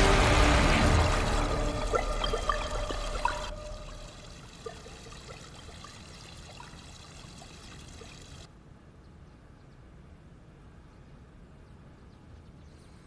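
Thin streams of water pouring from bamboo spouts and splashing below, a steady hiss with a few small drips. Music fades out under it in the first few seconds, and the water sound drops quieter later on.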